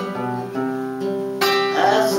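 Acoustic guitar strumming chords and letting them ring, with a fresh strum about one and a half seconds in: an instrumental bar between sung lines.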